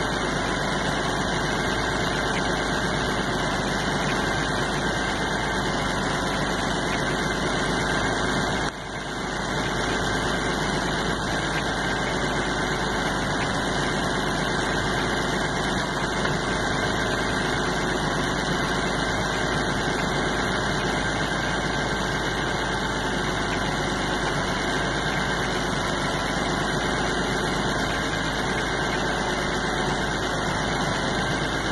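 A tractor's diesel engine running steadily while it powers a timber-loading crane, with a brief dip in level about nine seconds in.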